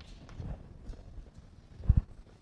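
Chalk knocking against a blackboard while writing, a few soft taps, then two loud low thumps close together near the end.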